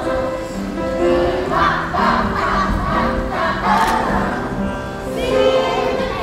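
A choir of young children singing a song together to music, in steady held notes.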